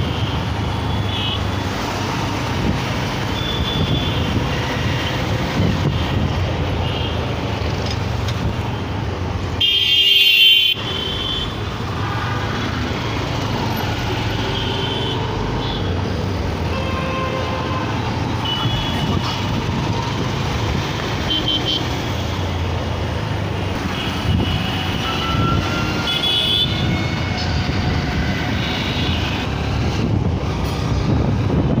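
Riding through city traffic on a motorcycle: steady engine, road and wind noise, with short vehicle horn toots from the surrounding traffic now and then. A louder, shrill horn sounds for about a second about ten seconds in.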